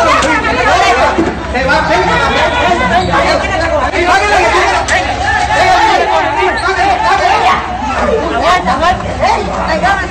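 Several people talking loudly over one another in excited chatter, with no single voice clear.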